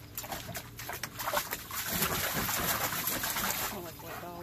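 A German Shepherd pawing and splashing water in a plastic kiddie pool. The splashing builds and is loudest in the second half, dying away near the end.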